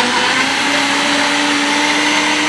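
Philips ProBlend 6 countertop blender running at full speed, blending spinach, oats and water into a smoothie. Its motor pitch rises slightly about half a second in, then holds steady.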